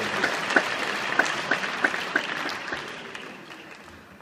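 Theatre audience applauding, with single sharp claps standing out from the mass, dying away over the last second or so.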